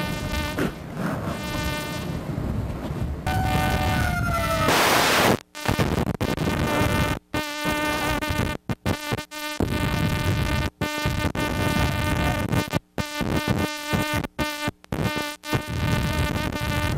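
A steady buzz with many evenly spaced overtones. About five seconds in there is a brief burst of noise, and after that the sound cuts out for short moments again and again.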